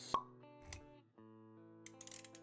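Intro music of sustained, held notes with a sharp pop just after the start, the loudest sound, and a soft low thud a little before the middle.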